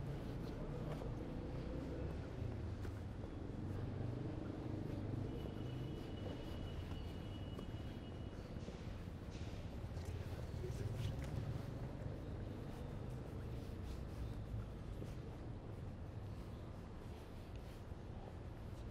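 Quiet city street ambience: a steady low rumble of distant traffic, with faint scattered clicks and a thin high tone held for about three seconds about a third of the way in.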